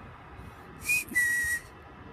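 A person whistling two notes to call a pet: a short higher note about a second in, then a longer, slightly lower held note, both breathy.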